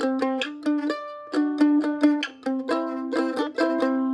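F-style mandolin played solo: a C chord, voiced with its root at the fifth fret of the G string, picked up and down with a few arpeggiated notes ringing together. About a second in the chord shifts briefly to other pitches, then settles back on the C.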